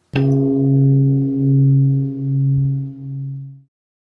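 A single deep gong-like strike that rings on as a low hum, swelling and fading in slow pulses, then cuts off suddenly near the end.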